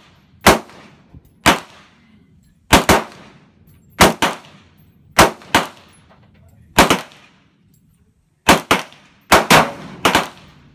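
Rifle shots on a firing range: about a dozen sharp cracks at irregular intervals, several coming in close pairs, each trailing off in a short echo.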